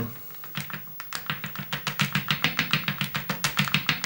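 Fast, even back-and-forth rubbing strokes of a small hand-held pad working wax across watercolour paper, about seven scratchy strokes a second, starting about half a second in and growing louder.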